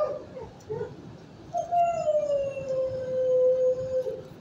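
A dog howling: after two brief whines near the start, one long howl begins about one and a half seconds in and slides slowly down in pitch for over two seconds.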